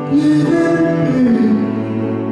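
Live performance of a slow, tender song: long held notes and a gliding melody over plucked strings.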